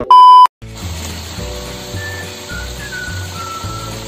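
A loud, steady test-pattern beep lasting under half a second, cut off abruptly. Then soft background music over the steady hiss of cabbage frying in a wok.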